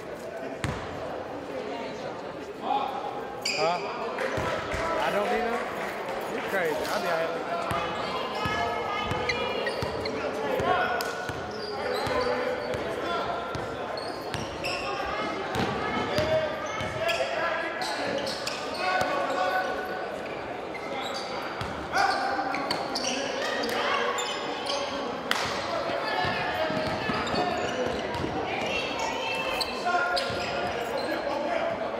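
A basketball game in a large gym: the ball bouncing on the hardwood court, with voices of players and spectators talking throughout.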